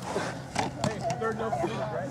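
Voices on an outdoor football field: people talking and calling, with one exclaiming "whoa" about a second in, and a few sharp clicks in the first half.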